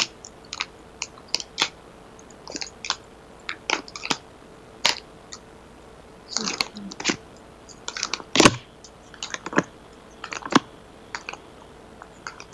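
Tarot cards being handled and laid out: irregular light clicks and short rustles, with one sharper snap about eight and a half seconds in, over a faint steady hum.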